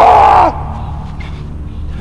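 A woman's loud, harsh scream that rises and then falls in pitch and cuts off about half a second in, followed by a low steady drone.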